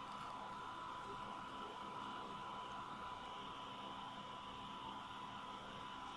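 Faint steady hiss of a recording's background noise, with a thin, steady high-pitched whine running through it.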